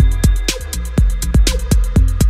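Minimal deep tech electronic track: a steady kick drum about twice a second over a deep, continuous bass, with fast ticking hi-hats between the beats.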